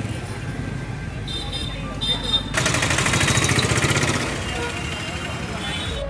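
Busy street sounds: background voices and traffic, with a louder rattling vehicle noise rising about two and a half seconds in and lasting about two seconds.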